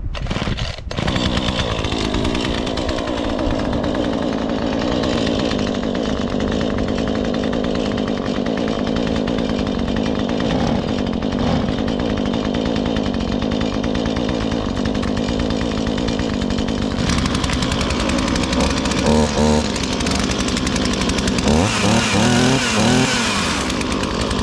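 Small two-stroke petrol chainsaw running on, at a steady, even engine note that settles about a second in; its running is quiet.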